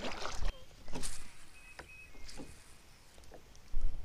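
Kayak being paddled: a few light knocks of the paddle and gear against the plastic hull with soft water sounds, and a low rumble near the end.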